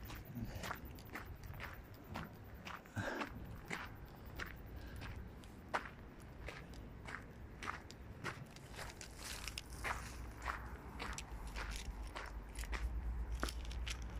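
Footsteps of a person walking on a gravel path, an even crunch about twice a second. A low rumble grows louder near the end.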